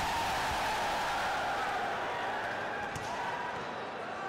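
A volleyball thudding a few times as it is bounced or struck, over the steady noise of a crowd of voices in the venue.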